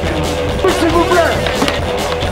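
Skateboards rolling and clattering on concrete, with sharp knocks of boards hitting the ground, over background music.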